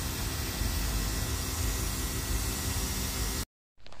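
Steady hiss of wind and road noise inside a moving vehicle, with a low engine drone underneath; it cuts off abruptly about three and a half seconds in.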